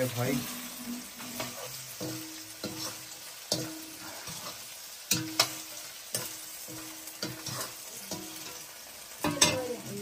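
A long-handled metal ladle scraping and stirring potatoes and soybean chunks frying in oil in a black iron wok. Sharp scrapes of metal on iron come every half second to a second over a steady sizzle, with the loudest scraping near the end.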